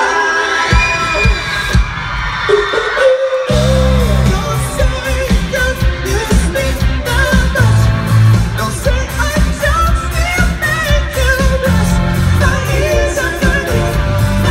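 Live pop-rock band with male lead vocals and electric guitar. The song opens sparse, then bass and drums come in at full volume about three and a half seconds in.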